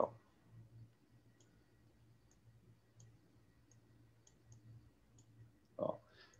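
Faint, irregular clicks, about seven over four seconds, over a low steady hum on an otherwise quiet line.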